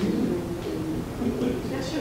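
Indistinct conversation of people talking in a room, with no clear words coming through.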